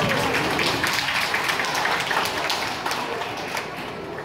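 Audience applause after an ensemble's piece ends: dense, steady clapping with a few voices calling out at the start, easing off slightly toward the end.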